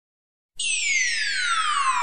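Silence, then about half a second in a single electronic tone starts suddenly and slides steadily down in pitch: a synth sweep opening a DJ remix dance track.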